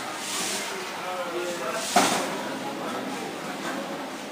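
Indistinct chatter of visitors' voices, with one sharp knock about halfway through.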